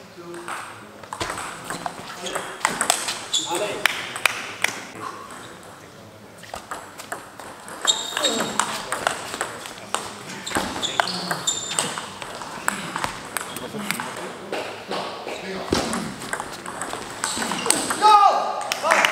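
Table tennis rally: the celluloid-type ball being struck by rubber-faced bats and bouncing on the table, a quick series of sharp clicks.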